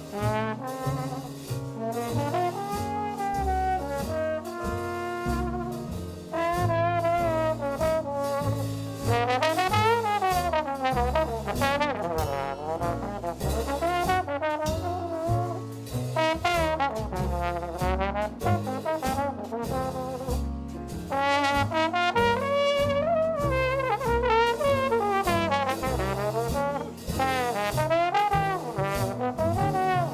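Slide trombone playing a jazz solo with a wavering vibrato on held notes, over a small band with a plucked upright bass underneath.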